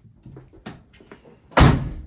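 Volkswagen Transporter rear barn door slammed shut once, loudly, about one and a half seconds in, after a few light clicks and knocks of handling.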